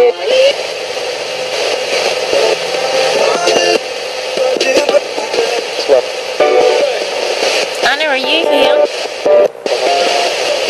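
RadioShack portable radio sweeping up the FM band as a ghost box, played through a small external speaker: steady static hiss chopped by brief snatches of broadcast voices and music as it jumps from station to station.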